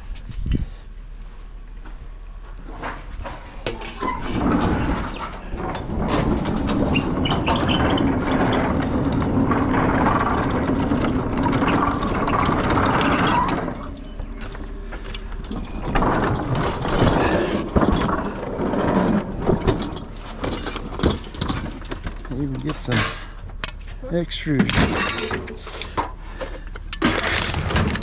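A refrigerator being wheeled on a hand truck across concrete and pavement: a steady rolling rumble for several seconds, then irregular knocks and rattles as it is handled.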